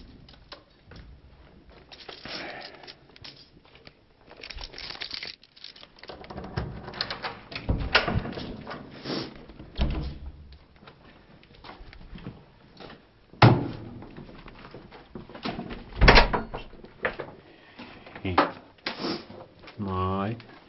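Rustling and handling noise with a string of knocks and clicks as an apartment door is opened and shopping bags are carried through. Two loud thuds come about 13 and 16 seconds in.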